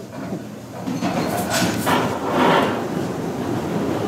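Bowling-alley machinery rumbling and clattering after the first ball: the pinsetter cycling and the ball rolling back along the ball-return track, with a few knocks about a second and a half in.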